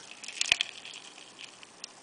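Faint handling noise from a clear cup with a scorpion in it, with a sharp click about half a second in and a softer tick near the end.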